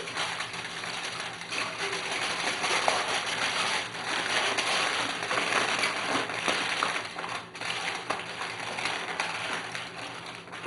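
Aluminium foil crinkling as it is folded and pressed down by hand over a baking dish. It is a continuous rustle full of small crackles.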